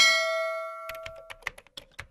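Subscribe-animation sound effects: a bright notification-bell chime rings and fades over about a second and a half. Near the end it gives way to a quick run of short mouse-click sounds.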